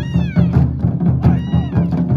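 Japanese taiko drums beaten in a fast, steady rhythm, with two high-pitched shouted calls over them: one at the start sliding down in pitch, another shorter one about a second and a half in.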